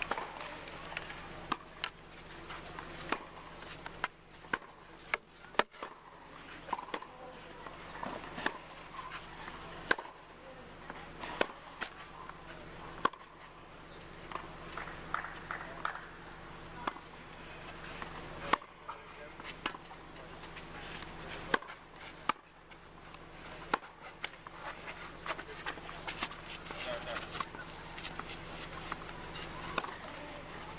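Courtside ambience at a clay-court tennis match between points: indistinct spectator chatter with scattered, irregular sharp knocks and a steady low hum.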